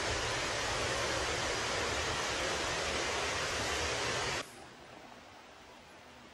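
Steady rushing outdoor noise with a low rumble beneath it, cutting off abruptly about four and a half seconds in to a much quieter, faint hiss.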